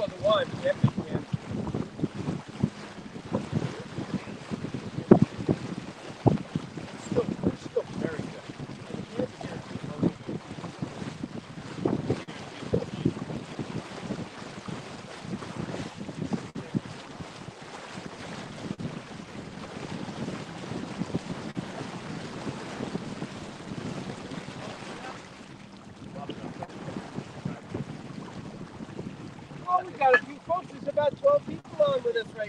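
Wind buffeting the microphone and water splashing along the hull of a 22-foot Chrysler sailboat under way, in irregular gusts. It is busier and louder in the first half and settles to a steadier, quieter rush near the end.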